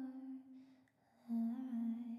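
A woman humming a slow melody softly and close to the microphone, without words: one held note fades out about half a second in, and after a short pause a second long note begins.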